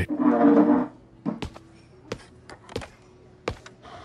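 Footsteps on a hard floor: sparse light taps, often in pairs, about two-thirds of a second apart.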